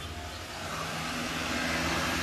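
Steady low background hum with a rushing noise that gradually grows louder.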